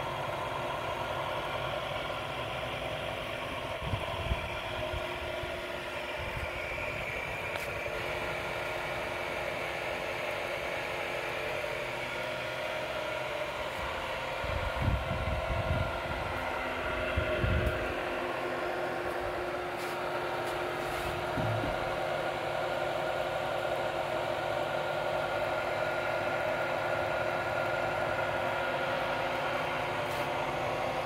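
Steady hum of an electric motor-driven honey pump running, with several steady whining tones over it. A few dull low thumps come about halfway through.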